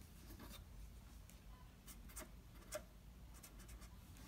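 Faint scratching of a felt-tip marker drawing and writing on paper, in short separate strokes.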